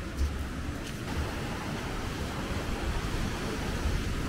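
Sea surf washing steadily onto a sandy beach, with wind gusting on the microphone as a fluctuating low rumble.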